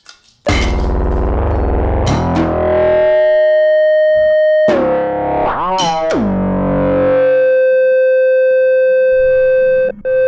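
Improvised live electronic music from sampling and processing on a norns and monome grid: loud, distorted sustained tones come in suddenly about half a second in. They slide down in pitch, bend and waver near the middle, then hold one steady note.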